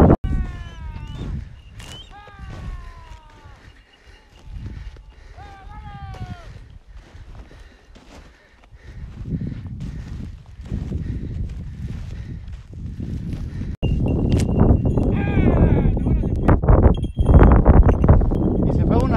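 Wind buffeting the microphone, loudest in the last four seconds. In the first seven seconds there are three short runs of falling calls.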